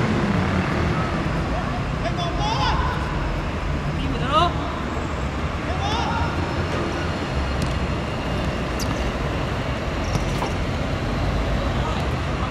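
A few short, rising shouts from footballers on the pitch, the loudest about four seconds in, over a steady low background rumble of city traffic.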